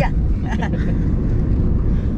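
Steady low rumble of a car driving at road speed, heard from inside the cabin.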